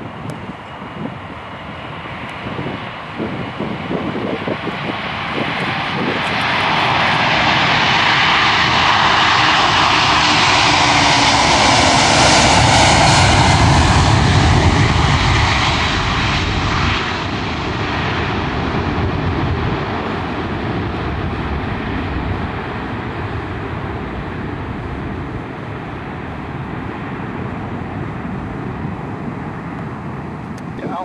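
Pakistan International Airlines Boeing 747's four jet engines at take-off power: the roar builds as it rolls down the runway, is loudest with a deep rumble as it passes and rotates about 12 to 16 seconds in, then fades slowly as it climbs away.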